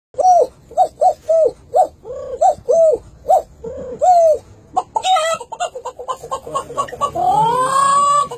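A man imitating animal calls with his voice: a quick series of about ten short, arched calls, then a fast chattering run, and near the end a long rising call like a rooster's crow.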